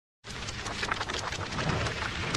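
Welding arc crackling and spattering, a dense run of small sharp crackles with a low rumble beneath, starting suddenly a quarter second in.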